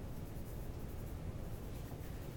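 Chalk scratching on a chalkboard in short strokes as a curve is drawn, over a low steady room hum.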